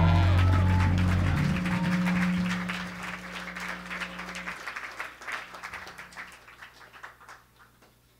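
A rock band's final chord ringing out and fading, cut off about four and a half seconds in, while an audience claps and cheers, the applause dying away toward the end.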